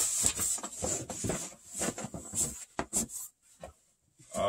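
Vinyl record sleeves being lifted out of a cardboard box and handled: irregular rustling and sliding with light knocks. The sounds stop a little over three seconds in.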